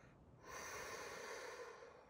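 A woman's soft breath taken through the mouth in a pause between spoken phrases, lasting about a second and a half and starting about half a second in.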